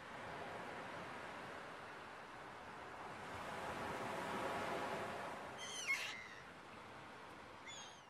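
A faint rushing ambience that swells and fades, with a short, high, wavering bird-like call about six seconds in and a smaller chirp near the end.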